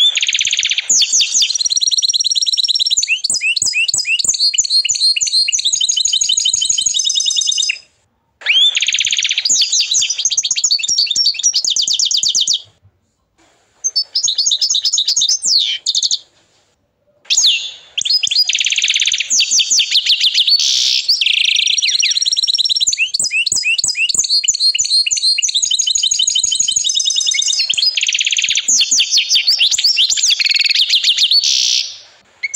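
Agate canary singing: long phrases of rapid trills and rolling runs of repeated notes, broken by short pauses about 8, 13 and 16 seconds in.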